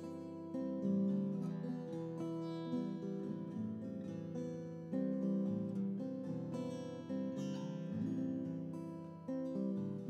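Acoustic guitar being strummed in chords, with a fresh strum every second or two. It is played along to a playback of an earlier guitar take, and the live part does not match it, so the two parts clash.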